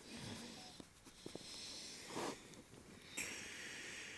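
A man breathing faintly close to the microphone: several breaths in and out, a brief hum a little past the middle, and a sharper breath about three seconds in.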